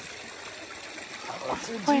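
Steady trickle of water in a rock-lined hot-spring pool.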